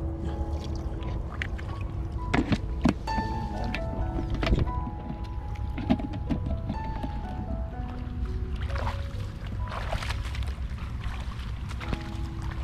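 Background music, a melody of held notes that change pitch, over a steady low rumble and a few sharp knocks.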